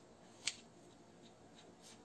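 Pencil and ruler being worked on chart paper: very faint, with one sharp tick about half a second in and a few faint ticks near the end.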